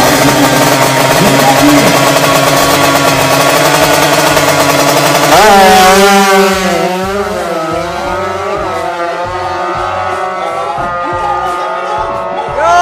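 Drag-racing motorcycle engine held at high, steady revs on the start line. About five seconds in it launches: the sound jumps in loudness, and the pitch climbs and drops several times through the upshifts as the bike pulls away down the strip and fades.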